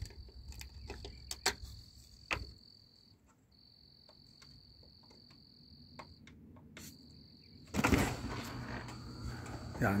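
Sharp clicks of the garage door keypad being pressed, then about eight seconds in a loud, steady noise as the automatic garage door opener starts and the door begins to move. A thin, high-pitched steady tone, broken twice, sounds through the first part.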